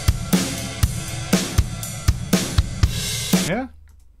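Stereo drum-kit loop of kick, snare and ride cymbal heard through a compressor set to too fast a release: the ride surges back up in the gaps between the kicks and snares, an audible pumping or breathing. The playback stops about three and a half seconds in.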